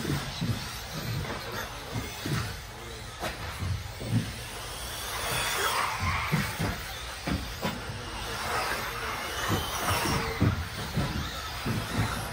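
1/10-scale electric RC buggies with 17.5-turn brushless motors racing: the whine of motor and gears rising and falling as they accelerate past, with scattered short knocks of the buggies landing and hitting the track.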